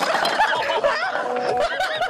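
A group of people laughing and shrieking as a stacked pyramid of filled shot glasses topples, with a noisy clatter and splash of glass and liquid at the very start.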